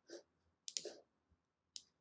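Three faint, short clicks spread across a pause, with near silence between them.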